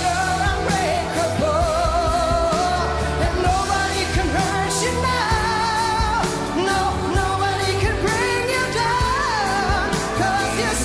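A solo singer belting a pop song live into a handheld microphone, long held notes with a wide vibrato, over a steady pop backing accompaniment.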